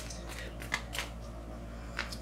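Tarot deck being shuffled by hand, giving a series of light card clicks and snaps.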